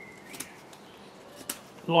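Knife blade slicing small shavings off a hard green stick while working round to point its end: two short sharp cuts about a second apart.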